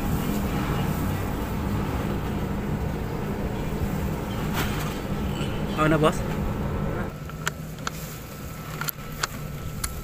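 Steady low hum of a running motor or engine, which drops away about seven seconds in, followed by a few light clicks.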